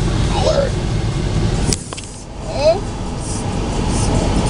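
Low rumble of a car cabin on the move, with brief bits of voice over it. Just before two seconds in, the sound cuts off with a click, and a quieter stretch with a short voice follows.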